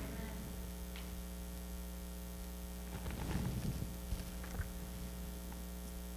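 Steady electrical mains hum: a low buzz with many evenly spaced overtones, with a few faint clicks and rustles around the middle.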